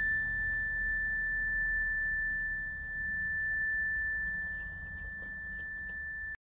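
A single pure high tone, like a struck tuning fork or bell, held steady throughout; its brighter overtones fade away early and only the one clear pitch rings on.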